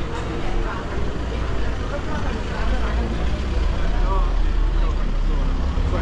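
Busy street ambience: a steady low rumble of car engines creeping past at close range, growing stronger about halfway through, with people talking in the background.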